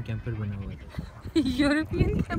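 People talking: a man's low voice at the start, then a louder, higher-pitched drawn-out voice in the second half.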